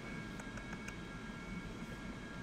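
Quiet, steady room tone of a desk recording: a low hum and even hiss with a faint steady high whine, no speech.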